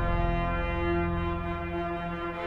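Pipe organ playing full, held chords on the manuals over deep pedal bass notes, easing slightly near the end before the next chord.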